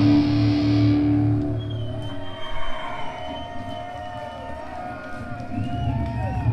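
Live black metal band, distorted guitars and drums at full volume, breaking off about a second in at the end of a song. Afterwards a few held and gliding tones ring on more quietly.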